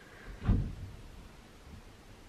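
A single dull thump about half a second in, over faint room tone.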